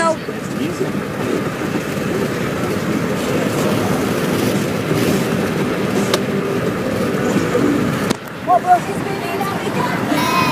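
Steady road noise inside a moving car's cabin, with indistinct voices mixed in. It cuts off sharply about eight seconds in, and a few short voice sounds follow.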